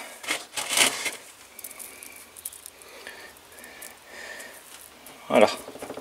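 Seed compost being crumbled by hand and scattered over a plastic seed tray to cover sown seeds: short noisy rustles in the first second, then faint scattered grainy sounds.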